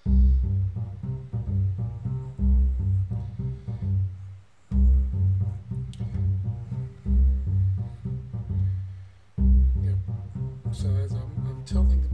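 Background music: a plucked bass line with guitar, a short phrase repeating about every two and a half seconds.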